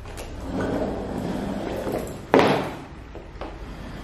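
Rustling and shuffling of a person settling into an upholstered armchair, with one sharp thump a little over two seconds in.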